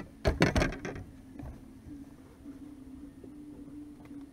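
Several quick knocks and thumps on the boat in the first second, then a low steady hum.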